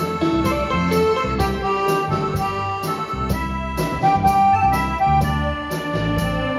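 A live band plays an instrumental passage with no singing: a keyboard melody over bass, electric guitar and drums, keeping a steady beat of about two strokes a second.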